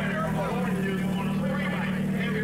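Suzuki Hayabusa inline-four drag bike engine running on the start line, holding a steady note, with a man's voice talking over it.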